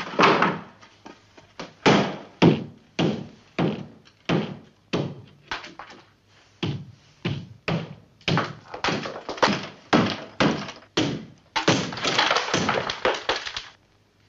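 Repeated heavy knocks, about one to two a second, as a lath-and-plaster ceiling is battered through from the floor above, with a longer rough burst near the end as it breaks open.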